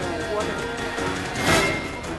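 Studio background music plays under low, indistinct voices. A brief loud noisy burst comes about one and a half seconds in.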